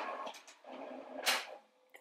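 Printer running, a short stretch of mechanical whirring with a brief louder burst about a second in.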